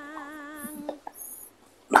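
A held pitched note with a slow vibrato, one tone with clear overtones, that stops about a second in. After a short hush, a sharp click comes near the end.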